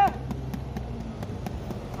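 Steady low rumble of road traffic, with the end of a man's spoken word at the very start.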